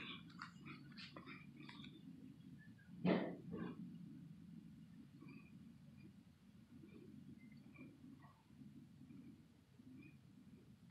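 Quiet room tone of an empty classroom, a low steady hum with scattered faint ticks. One short louder sound comes about three seconds in.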